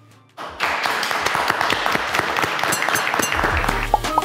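Applause starts about half a second in, with music coming in under it near the end on a low bass note.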